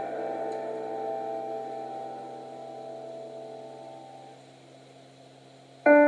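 A piano chord left ringing and slowly dying away almost to silence, then a new chord struck near the end.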